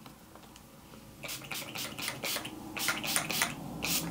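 Pump-action setting spray bottle (e.l.f. Makeup Mist & Set) misting the face in a quick run of short sprays, about ten of them, starting about a second in.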